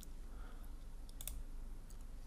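A few faint computer mouse clicks, two of them close together about a second in, over a low steady hum.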